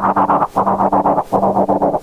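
Korg volca FM synthesizer run through a Korg Monotron Delay, playing a gritty repeating note pattern that pulses about every three-quarters of a second, its tone growing duller as it goes.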